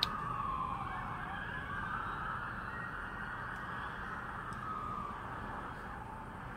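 Emergency-vehicle siren wailing, its pitch sliding slowly down and back up, fading out about five seconds in, with a short click right at the start.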